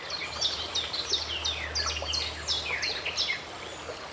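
Birds chirping: a quick run of short chirps, each falling in pitch, over a steady low hum.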